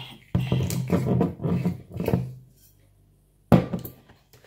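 Handling noises and knocks, ending with a single sharp knock about three and a half seconds in.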